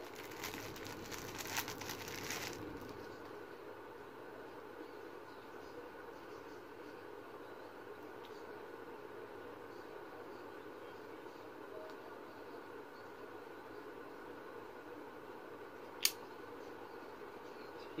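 Crinkling and rustling from items being handled for the first couple of seconds, then quiet room tone with a faint steady hum, and one sharp click near the end.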